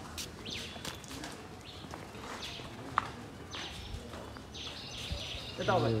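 Birds chirping outdoors in short, falling calls repeated every second or so, turning into a busier run of chirps near the end, with a single sharp click about three seconds in. A brief burst of a man's voice comes just before the end.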